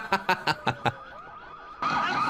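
Car alarms in a film soundtrack. A rapid string of short chirps, about six a second, comes first; near the end several car alarms start up together, wavering and wailing on top of one another, and these are the loudest sound.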